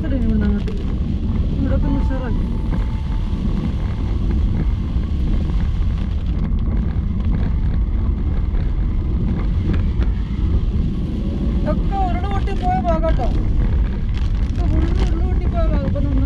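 Steady low rumble of a car's engine and tyres on a wet road, heard inside the moving car, with brief voices now and then.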